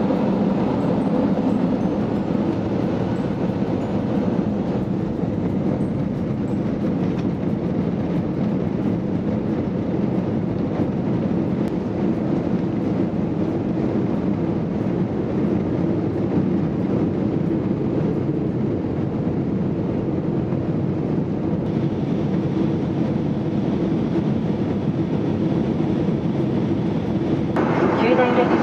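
Steady cabin noise of an Airbus A320 taxiing on the ground: the engines running at low power, with the low rumble of the airframe rolling along, heard from inside the cabin at a window seat.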